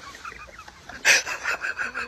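High-pitched cackling laughter in quick clucking pulses, with a louder burst about a second in.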